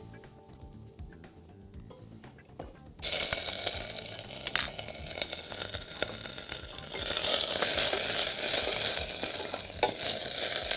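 A small garlic clove in hot olive oil sizzling in a stainless steel pot, starting suddenly about three seconds in and growing louder a few seconds later. A wooden spoon stirs it near the end.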